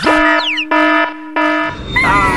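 Cartoon alarm buzzer sound effect set off by a red button being pressed: a steady, harsh horn-like tone sounding in three blasts with short breaks, a quick falling whistle running over the first blast.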